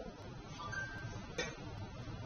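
Low background hum and room noise in a pause between a man's phrases, with one faint click about one and a half seconds in.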